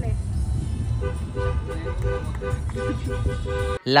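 Car horn honking in a run of short toots, starting about a second in, over a steady low rumble.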